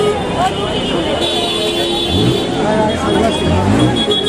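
Busy street: people talking over steady road traffic, with a held horn-like tone sounding twice.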